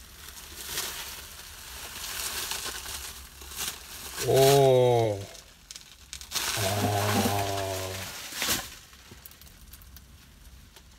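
Plastic bubble wrap crinkling and crackling as it is pulled apart by hand. Around the middle come two short wordless groans, then a sharp click, and the handling goes quieter near the end.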